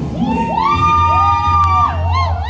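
A high-pitched voice giving one long whoop, gliding up at the start, held for about a second and then falling away, with a short click near the end.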